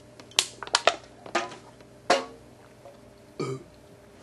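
A man burping loudly right after chugging a can of drink: several sharp burps in the first two seconds and a lower, longer one near the end. Crackles of the thin aluminium can may be mixed in.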